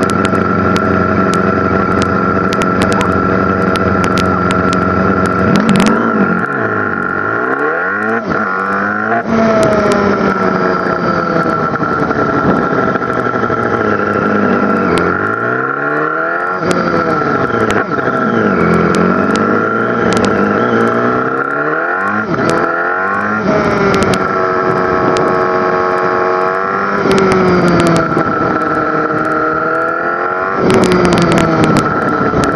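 On-board sound of a Kawasaki ZX-10R's inline-four engine. It idles steadily for the first few seconds, then pulls away, rising in pitch and dropping back at each gear change several times as the bike accelerates and rides on.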